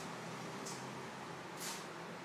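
Three brief, soft rustling swishes over a steady hiss: one at the start, one under a second in and one near the end.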